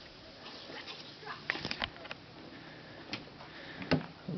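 Faint, distant children's voices over background noise, with a few light clicks, the sharpest just before the end.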